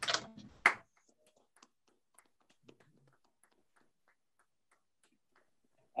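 Sparse hand clapping heard over a video call: a couple of sharp claps in the first second, then only faint scattered ticks of clapping.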